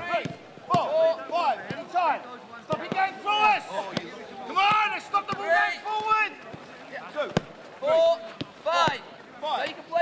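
A football being kicked in a quick passing drill: a sharp thud of the ball struck every second or so, among men's loud shouted calls across the pitch.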